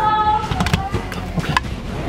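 A short bit of voice at the start, then a handful of sharp, irregular knocks and clicks over quiet background music.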